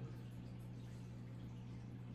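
Quiet room tone: a steady low hum under faint background hiss, with no distinct events.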